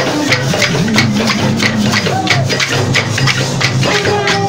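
Bumba-meu-boi matraca-style percussion: wooden matraca clappers clacking in a steady fast rhythm, about three to four strokes a second, over the low beat of large pandeirão frame drums.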